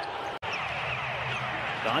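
Live basketball court sound from an NBA broadcast: sneakers squeaking and a ball bouncing on the hardwood over arena ambience. The sound cuts out for an instant at an edit just under half a second in.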